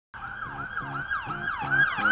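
Emergency vehicle siren in fast yelp mode: a loud wail sweeping down and up about three times a second.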